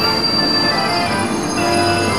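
Passenger train pulling into a platform, its wheels giving a high, steady squeal.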